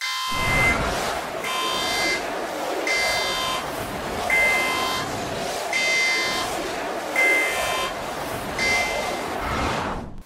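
Channel intro soundtrack: a dense, busy electronic sound with a bright, horn-like buzzing tone that repeats about every second and a half. It starts and stops abruptly.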